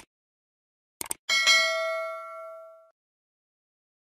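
Click sound effects as a cursor presses a subscribe button, then a bright notification bell 'ding' sound effect that rings for about a second and a half and fades out.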